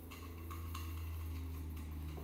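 Fingers stirring a dry spice rub in a small stainless steel bowl, giving a few faint light ticks over a steady low hum.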